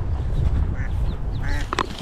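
A duck quacking, a few short quacks in the second half, over wind noise on the microphone.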